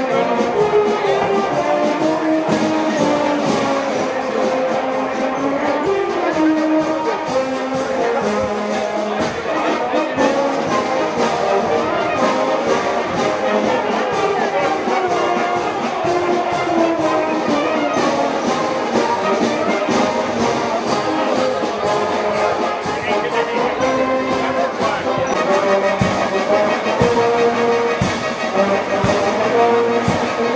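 Brass band music with a steady beat, playing without a break.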